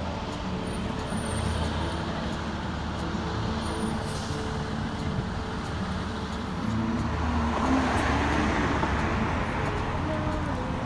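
Steady road and traffic noise of a car driving through city streets, growing louder about seven seconds in.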